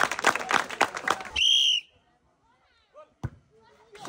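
A crowd claps and chatters, then a single short blast of a referee's whistle sounds about a second and a half in. The sound then cuts off suddenly.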